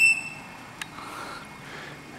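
A high whistle-like tone that has just risen in pitch holds briefly and fades out in the first half second, followed by a single click, over low background noise.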